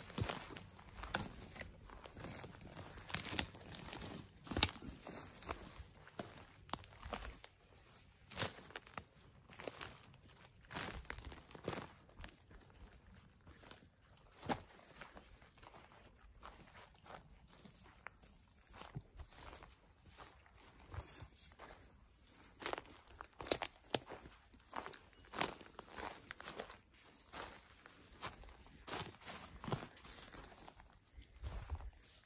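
Footsteps through dry forest undergrowth, with twigs and brush crackling and snapping underfoot at an uneven pace.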